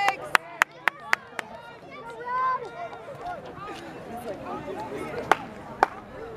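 Quick hand clapping close to the microphone, about four claps a second in the first second and a half, then two more single claps near the end, with shouts and calls from players and spectators across the field throughout.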